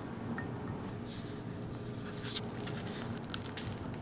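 Quiet handling of a pressed-glass dessert dish: a few light clicks, with one sharper click a little past halfway.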